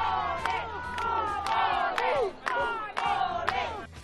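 A crowd of protesters shouting, with several high, strained voices rising over one another.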